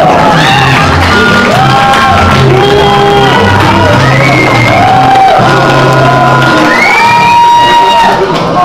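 A song performed live and loud: a voice sings long held notes, several sliding up into the pitch, over instrumental accompaniment with a moving bass line.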